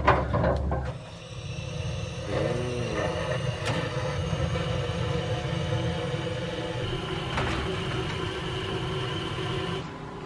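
Handheld butane torch running with a steady hiss, its flame played onto charcoal briquettes to light them.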